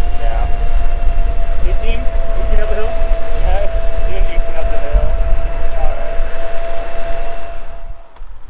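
Wind buffeting the microphone of a moving ride camera, over a steady high whine from an electric scooter's motor at full throttle. The whine holds one pitch until it cuts off at the end.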